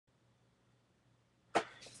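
Near silence with a faint low hum, then a single sharp click about a second and a half in, trailing off into a softer sound just before speech.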